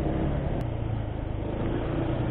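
Motorcycle engine running steadily while riding, under wind and road noise, with a single faint click about half a second in.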